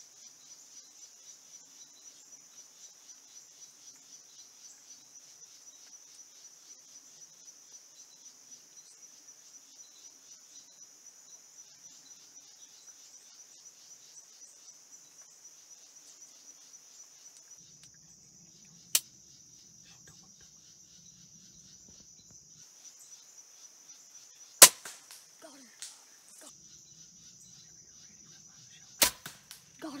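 Crickets chirping in a steady fast pulse, then a light click, and a loud, sharp crossbow shot (a Bear Legion 370) with a short rattle after it, about three-quarters of the way in. A second sharp crack comes near the end.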